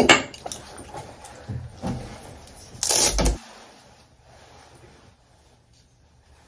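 Handling noises: a few short knocks and clicks, then a louder rustling scrape about three seconds in, as things are moved about close to the phone. After that only a quiet small room.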